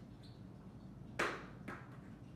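A plastic stacking ring tossed onto a carpeted floor: one sharp hit about a second in as it lands, and a smaller one half a second later as it bounces.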